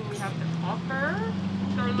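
A steady low hum of an idling vehicle engine under a man's voice, which makes a drawn-out, wavering vocal sound about half a second in.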